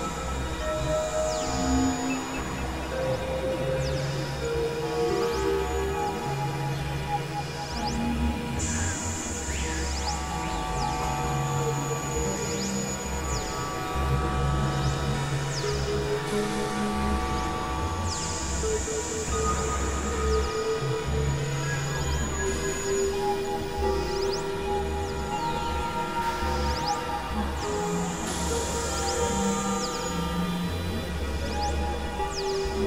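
Experimental electronic drone music: layered held synthesizer tones that shift every second or two over a low, blocky bass. High sweeps come and go above them.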